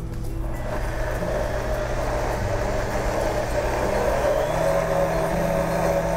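Countertop blender motor running steadily, blending a thick egg, anchovy, parmesan and oil Caesar dressing.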